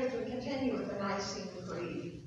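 A woman speaking, her voice fading out near the end.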